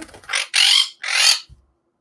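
A pet parrot screeching twice, loud and harsh, the first call about half a second long and the second shorter.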